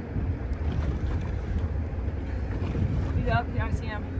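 Wind buffeting the microphone, a steady low rumble over the sound of the open water. Near the end comes a short, wavering, voice-like sound.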